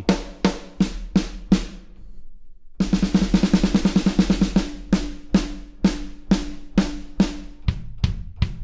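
Addictive Drums 2 virtual drum kit played live from a MIDI keyboard with the audio buffer raised to 1024 samples, which adds latency between key press and sound. Single drum hits about three a second, a short pause, then a fast roll about three seconds in, then spaced hits again with a louder hit near the end.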